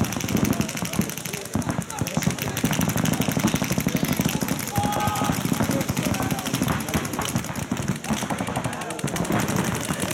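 Paintball markers firing in fast, continuous strings of shots, a dense run of pops with no real break.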